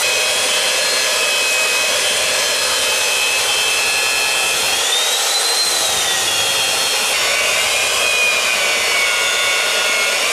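Handheld power tools, an electric hand planer and an angle grinder, running continuously with a high motor whine as they cut down a laminated white cedar propeller blank. The whine rises and falls in pitch about five seconds in.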